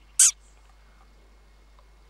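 A single short, sharp report from a Theoben MFR .22 air rifle being fired, about a fifth of a second in, followed by faint steady field background.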